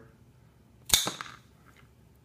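Coax cutters snapping through LMR-400 UltraFlex coaxial cable in a single cut: one sharp snap about a second in, with a short bright tail.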